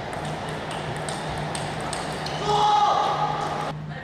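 Table tennis rally: the celluloid ball striking paddles and table in sharp clicks about twice a second. About two and a half seconds in a player gives a loud shout on winning the point, which cuts off suddenly near the end.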